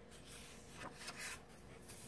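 A page of a picture book being turned by hand: a few faint, soft papery swishes in the middle.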